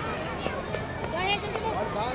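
Several people's voices talking and calling out over one another, some of them high-pitched, with a few short clicks.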